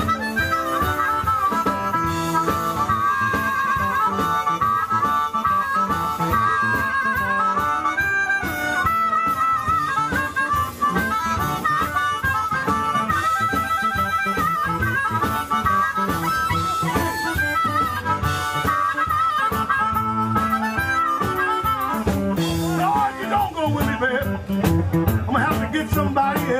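Amplified blues harmonica, a harp cupped against a microphone, playing wavering, bending lines over a backing band with bass and drums. The phrasing turns busier in the last few seconds.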